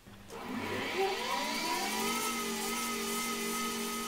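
Hercus PC200 small CNC lathe's spindle starting up, a rising whine that climbs for about two seconds and then settles into a steady running hum.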